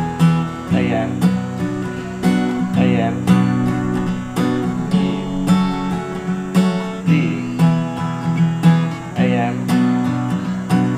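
Capoed steel-string acoustic guitar strummed in a steady rhythm, cycling through a repeating Em–D–Am–Am chord progression.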